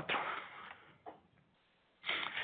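A man's voice ends a word with a sharp click, followed by a breathy hiss that fades away within about a second, leaving near silence.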